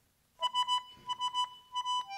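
Tango orchestra starting a piece: after a brief silence, one high note is repeated in short, quick staccato strokes, about eight times.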